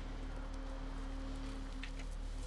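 A steady low background drone with a held mid-pitched tone over it, from a film soundtrack's score or ambience, with one faint tick near the end.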